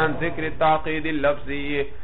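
A man's voice reciting in a chant-like, sing-song intonation, in phrases that stop shortly before the end; this is typical of a teacher reading aloud the Arabic text of a classical book before translating it.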